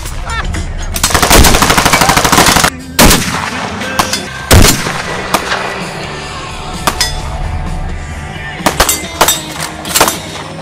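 Two loud shots from a Barrett M82A1 semi-automatic rifle in .50 BMG, about three and four and a half seconds in, each with a ringing tail, over background music. A dense loud passage runs just before the shots, and fainter sharp cracks follow near the end.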